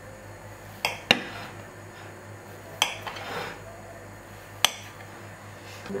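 Kitchen knife knocking against a ceramic plate while slicing a soft baked cake: four sharp clicks, the loudest about a second in.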